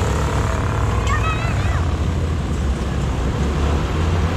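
Engines of a pack of small open-wheel dirt-track race cars running laps, a steady low drone.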